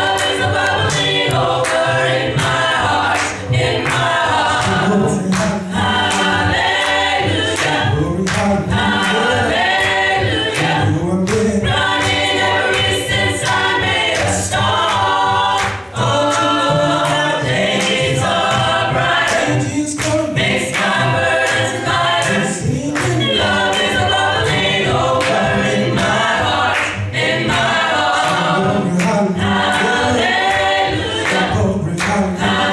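Gospel choir singing together in harmony, with a male lead voice on a microphone in front of the group.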